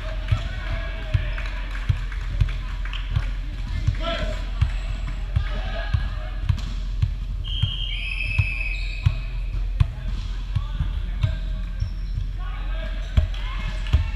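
Volleyballs thudding on a hardwood gym floor in a steady run, about two a second. Short high sneaker squeaks come around the middle, and voices chatter in the hall.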